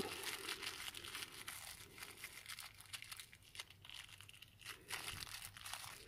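Small clear plastic bag crinkling faintly as it is handled, with irregular light crackles, as the screw is taken out of it.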